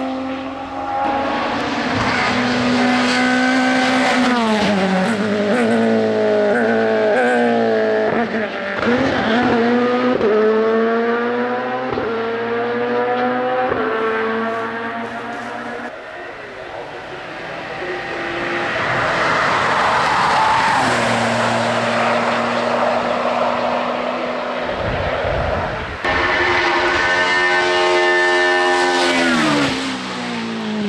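Race car engines at full throttle up a hill-climb course, one car after another. Each engine's pitch climbs through a gear, then drops sharply at each upshift, several times over the first half. A rushing burst of noise comes a little past the middle, and a fresh engine revs up hard near the end.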